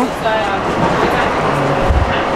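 Interior running noise of a moving Long Island Rail Road commuter train car: a steady rumble and rattle of the carriage on the rails, with a low bump near the end.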